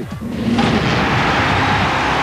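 TV highlights transition sound effect: a loud, even rushing whoosh that starts about half a second in and runs until the commentary returns.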